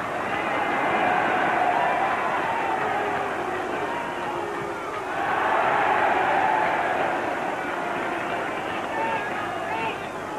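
Football stadium crowd noise: a dense roar of many voices with some chanting in it, swelling about a second in and again about halfway through.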